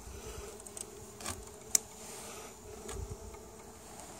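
Honey bees buzzing around a hive, a steady hum, with a few light knocks and one sharp click near the middle.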